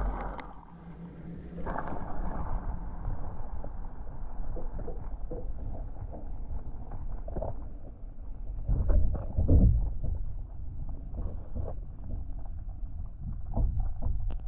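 Muffled underwater sound through a submerged GoPro in an aquarium: water sloshing and rumbling against the camera, with little treble, a sharp hit right at the start and louder low surges about nine to ten seconds in.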